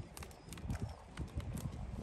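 Light, irregular tapping and knocking on wooden pier boards, quiet and uneven in spacing, over a low rumble.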